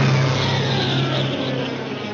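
Cartoon sound effect: a sudden loud, noisy crash that fades slowly as the nest is jolted and shakes, over a low held note from the orchestral score.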